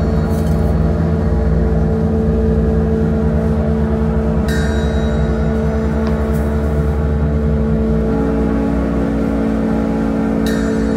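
Live doom metal: a slow, loud drone of distorted electric guitar held on steady notes over a low rumble, with a second higher note joining near the end. A single ringing metallic strike sounds about halfway through and rings on.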